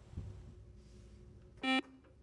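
Quiz-show contestant lockout buzzer: one short electronic buzz, about a fifth of a second long, about one and a half seconds in, marking a player buzzing in to answer.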